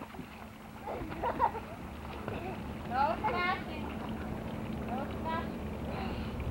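Young children's voices calling out in a swimming pool: a few short, high, wavering cries about one, three and five seconds in, over a steady low hum.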